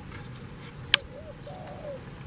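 Dove cooing: a few short, low, arching coos in the second half. A single sharp click about a second in is the loudest sound.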